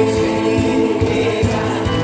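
A Korean trot song sung live into a microphone over backing music with a steady beat, several voices singing together.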